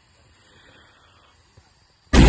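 Very faint, steady outdoor background noise in an open field, with a single small click near the end.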